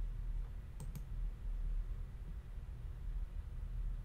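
Two quick computer mouse clicks about a second in, over a low steady hum.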